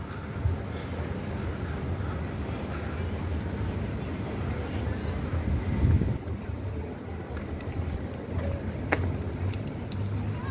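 Steady outdoor city background rumble with a low hum and a faint hiss, swelling slightly about six seconds in. A brief high chirp comes near the end.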